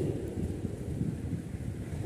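A pause in a man's speech, leaving only a low steady background rumble.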